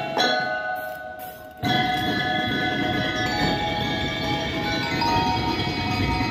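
Drum and lyre corps playing: metal-bar mallet keyboards strike a chord that rings and fades, then about a second and a half in the full ensemble comes in louder, with drums beneath the ringing bars.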